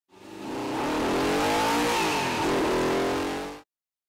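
Porsche 911 CSR's flat-six engine revving hard under acceleration, its pitch rising, dipping briefly about two and a half seconds in, then rising again. The sound fades in at the start and cuts off abruptly just before the end.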